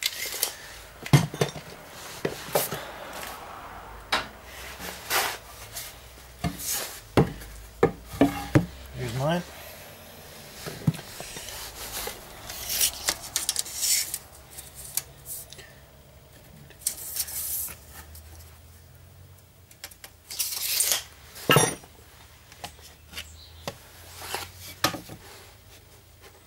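Irregular knocks, clicks and rubbing from handling a steel tape measure, a length of softwood timber and a spirit level on a workbench, with a short rising squeak about nine seconds in.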